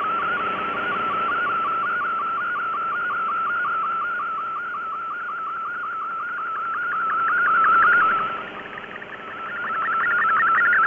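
An MFSK64 digital picture transmission heard through a shortwave receiver: a warbling data tone over a band of hiss. Near the end it briefly drops out for about a second, then returns.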